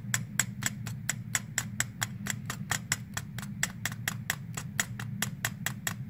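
A kitchen knife taps rapidly and evenly on a plastic cutting board, about five chops a second, as it finely minces a piece of liver. A steady low hum runs underneath.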